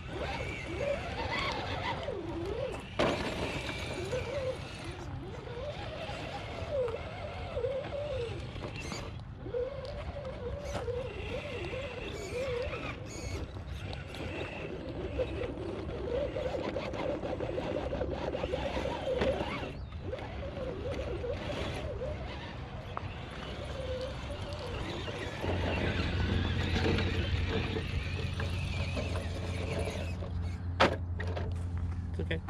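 Electric motors and gear trains of 1/10-scale RC rock crawlers whining, the pitch rising and falling as the throttle is worked on the climb. Scattered sharp clicks and knocks come from tyres and chassis on rock.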